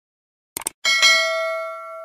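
Two quick clicks, then a notification-bell ding that rings with several pitches and fades away over about a second and a half: the sound effect of a cursor clicking the bell icon on a YouTube subscribe animation.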